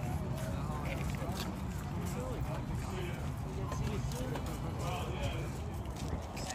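Indistinct voices of several people talking at a distance outdoors, over a steady low rumble, with a few sharp clicks.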